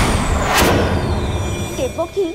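Dramatic TV-serial sound effect: a loud noisy whoosh with a thin falling whistle and a sharp hit about half a second in, over a steady low drone. A woman starts speaking near the end.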